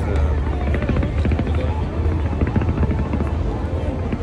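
Fireworks crackling in a rapid, continuous barrage over a steady deep rumble, with crowd voices mixed in.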